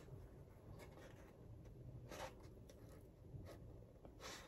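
Near silence, with a few faint scratches and rustles as a small paper coffee packet is pinched and turned over in the fingers.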